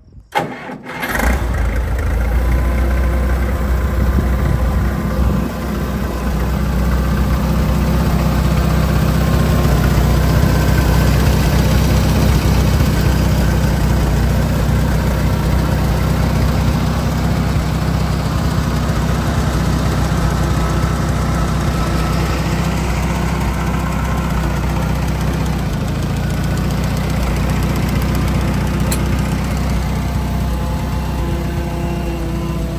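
Allis-Chalmers D17 tractor's six-cylinder engine cranking briefly and catching about a second in, then settling into a steady idle.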